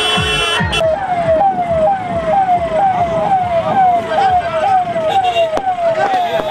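Electronic siren of a police escort vehicle, sounding a repeated yelping wail about twice a second, each cycle a quick jump up followed by a falling glide. Music with a steady beat fades out during the first second.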